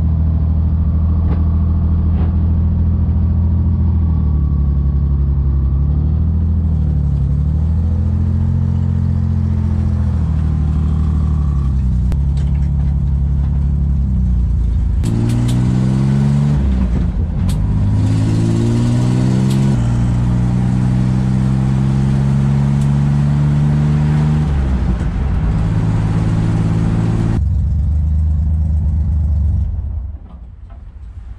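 Chevrolet Corvair's air-cooled flat-six engine heard from inside the cabin while driving, its revs rising and falling as it pulls away and changes speed. Near the end the engine is switched off and the sound drops away.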